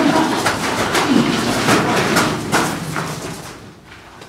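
Stage sword fight against a round shield: an irregular run of knocks, clatters and scuffling, tailing off near the end.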